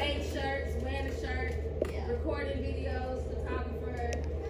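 A woman speaking, indistinct, in a large echoing room, over a steady low hum.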